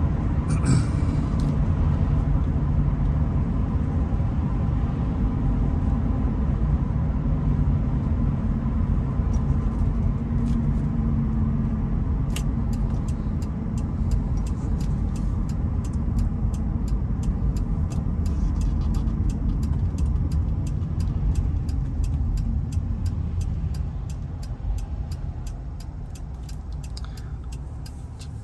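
In-cabin road and engine noise of a 2001 Nissan Maxima GLE driving: a steady low rumble. About halfway through, a regular ticking of about three clicks a second starts, the turn-signal indicator, and the rumble eases near the end as the car slows.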